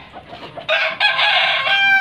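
A rooster crowing: one long crow that begins a little under a second in.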